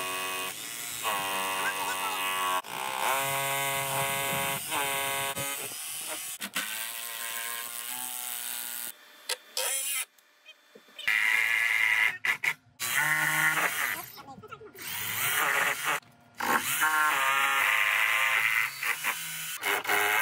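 Cordless power drill motors whining in short runs, speeding up and winding down several times with pauses between: a hammer drill boring into brick and a driver sinking Tapcon concrete screws to fasten a wooden ledger board to the wall.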